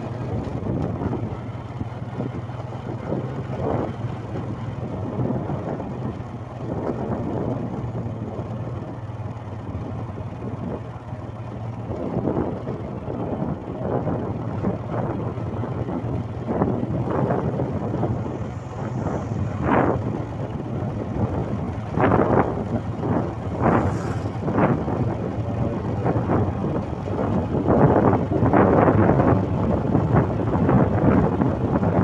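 Motorcycle engine running steadily while riding, with wind buffeting the microphone in gusts that grow stronger and more frequent in the second half.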